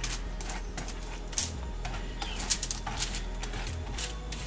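A wooden spoon pushing buttered squash seeds across a foil-lined baking sheet: irregular light scrapes and clicks as the seeds slide and tap on the foil.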